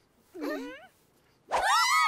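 Cartoon mermaid voices: a short wavering murmur about half a second in, then a sudden loud high-pitched group cheer starting about a second and a half in.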